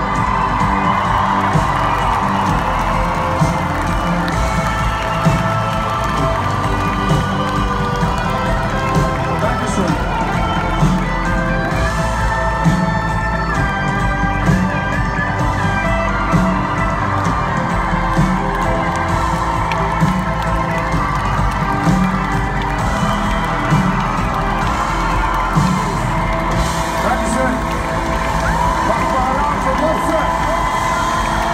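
Live hip-hop concert music over a loud PA with a steady beat, picked up from inside the crowd, with the audience cheering.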